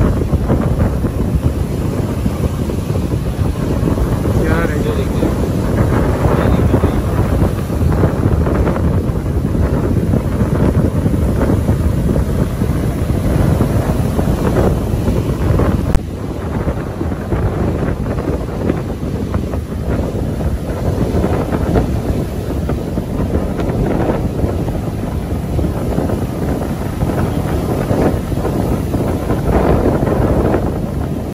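Strong, gusty storm wind from Hurricane Eta buffeting the phone microphone, with breaking surf underneath. A sharp click about halfway through.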